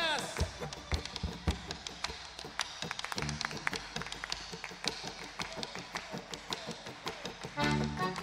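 Live chacarera drops to a quiet passage filled with many sharp taps and hand claps from the dancers and audience. The full band comes back in loud near the end.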